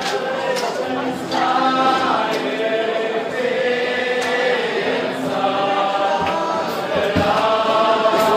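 Male voices singing together in a slow, chant-like melody with long held notes.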